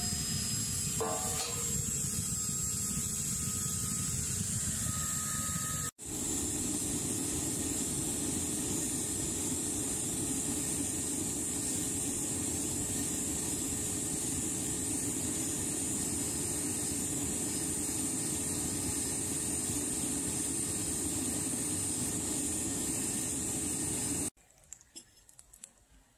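Smelting furnace burner running with a steady rushing hiss while heating a crucible of copper matte.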